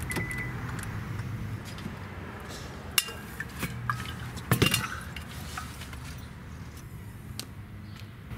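Small hard objects clicking and clinking as things are handled around a car's centre console and cupholders, over a steady low hum. The sharpest clicks come about three seconds in and again about a second and a half later.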